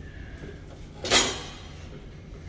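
Plate-loaded leg press in use under heavy weight: a single short clunk of the sled and plates about a second in, over a steady low hum.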